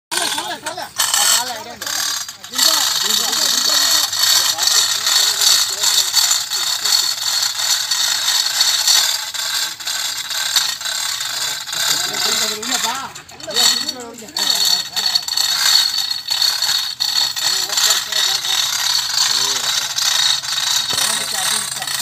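Men's voices talking, with metallic rattling and clicking from the chain hoist and chains as the bullock is lifted in its sling for shoeing.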